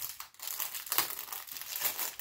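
Packaging crinkling as it is handled and opened, in dense irregular crackles, loudest about a second in.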